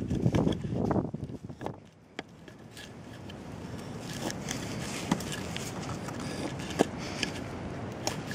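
A French-pattern draw knife shaving a seasoned birch mallet handle in a few pulled strokes in the first second and a half, taking off the last small flakes. A fainter steady rustle with a few light clicks follows.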